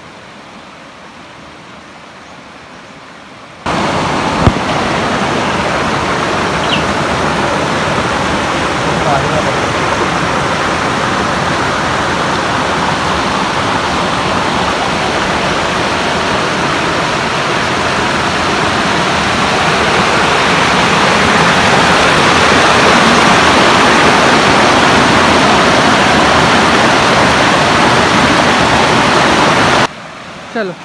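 Small waterfall on a rocky stream, water rushing steadily over boulders into a pool. Quieter at first, the rushing jumps suddenly much louder about four seconds in, with a single knock just after, and grows a little louder again past the middle.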